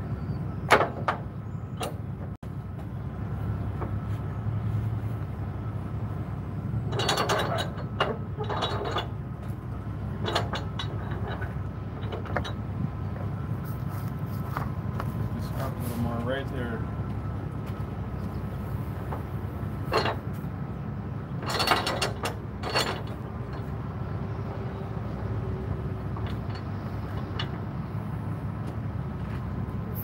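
Flatbed trailer strap winch being worked: bursts of sharp metal ratchet clicks, a cluster about seven to nine seconds in and another around twenty to twenty-three seconds, over a steady low rumble.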